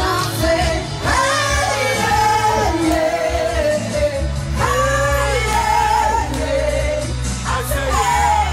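Live amplified music: a woman singing a melody into a microphone over an electric keyboard with steady low bass notes.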